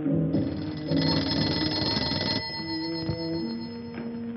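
An electromechanical telephone bell rings once for about two seconds, a call coming in, over the film's background score.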